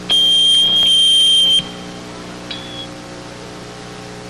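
Loud, steady high-pitched squeal of amplifier or PA feedback lasting about a second and a half, then a brief fainter squeal a second later, over a steady amplifier hum.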